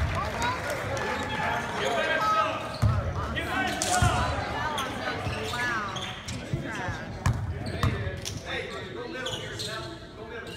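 Basketball bouncing on a hardwood gym floor, a few separate thumps at uneven intervals, over people talking in the gym.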